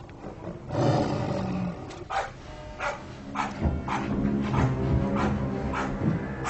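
A tiger growls once, about a second in, over a music score.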